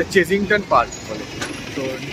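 Red London bus pulling in to a roadside stop, its engine and road noise running under street traffic; a man talks over it for about the first second.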